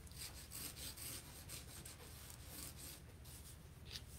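Ink pen scratching faintly across paper in many quick, short strokes.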